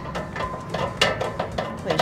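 Short metal clicks and knocks from a hand tool working the linkage of a fifth-wheel RV's jammed folding entry steps, with one sharper knock about halfway through.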